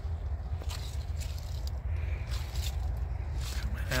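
Handling and movement noise from a person climbing out of a van's cab: scattered scrapes, rustles and light steps over a steady low rumble.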